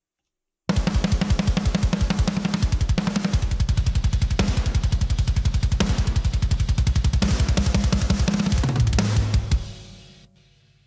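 Soloed drum shells of a deathcore mix playing back, used for an A/B comparison of an SSL Native Drum Strip plugin: fast, even double-kick drum strokes with snare hits. The drums start about a second in and fade out near the end.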